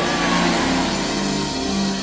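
Background music of sustained keyboard or synthesizer chords, held steadily with no speech over it.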